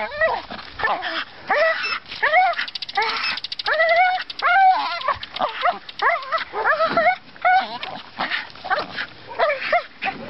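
A dog making a run of short, high-pitched whines and yips, about one and a half a second, while it hangs by its jaws from a rope and swings.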